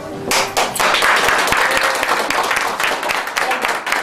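A crowd of people clapping by hand in a room. The applause starts suddenly about a third of a second in and goes on as a dense, steady patter.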